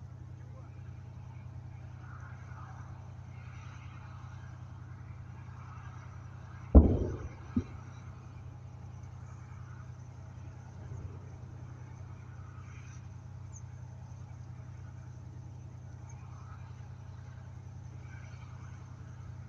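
Steady low drone of a tracked multiple rocket launcher's engine running. About seven seconds in comes one sharp, loud bang that dies away quickly, then a second, smaller bang just under a second later.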